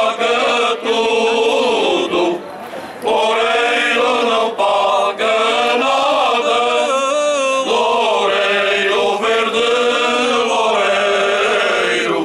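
Cante alentejano: a men's choir singing unaccompanied in slow, drawn-out phrases, with a short pause for breath between two and three seconds in.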